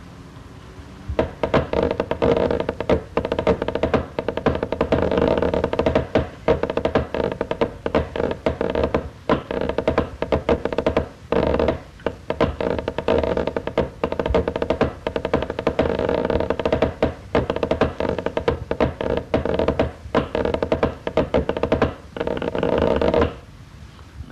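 Scottish pipe band snare drum score played with sticks on a practice pad: fast strokes broken by stretches of rolls, in a part marked piano and forte. The playing starts about a second in and stops shortly before the end.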